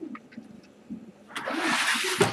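3D-printed plastic mounting plate slid across a tabletop: a short scraping rush starting about one and a half seconds in, after a few faint clicks.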